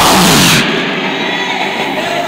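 A man's shout through a microphone and PA, over loud noise that cuts off sharply about half a second in; after that a steady, quieter background noise of the amplified hall.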